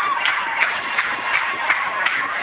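A church congregation in a praise break: a dense crowd din of voices, cut through by a fast, even beat of sharp percussive hits about three a second.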